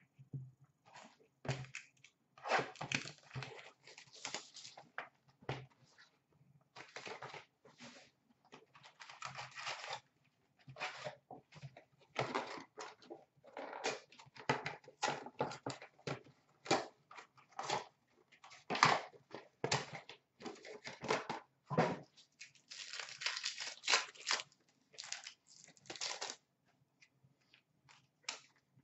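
Panini Contenders hockey card packs being torn open and their wrappers crinkled, with cards shuffled in the hands: a long run of short, irregular rips and rustles.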